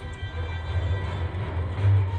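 Film clip soundtrack played over loudspeakers: a deep, low rumbling sound effect with music underneath, swelling near the end.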